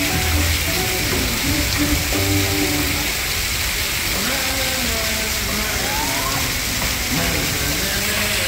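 Water jets spraying and splashing steadily onto a splash-pad deck, under background music and voices.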